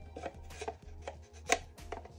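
Hard plastic clicks and knocks as two Funko Pop figure display bases are handled and pushed edge to edge to fit them together, the loudest knock about one and a half seconds in.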